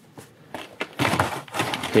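Clear plastic blister packaging handled by hands: a few faint clicks at first, then louder crinkling and crackling from about a second in.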